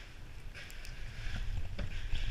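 Bobsled being shifted and tipped on a wooden deck: a low rumble with scraping and a few knocks, growing louder toward the end.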